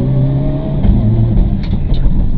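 Mitsubishi Lancer Evo IX rally car's turbocharged four-cylinder engine heard from inside the cabin at speed. Its note rises slightly, then changes about a second in, with a couple of sharp clicks near the end.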